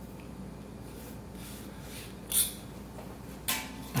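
Quiet room with a low steady hum, and two brief scratchy noises, one a little past halfway and one near the end, as a pencil is drawn along a steel ruler on the turntable top and the ruler is handled.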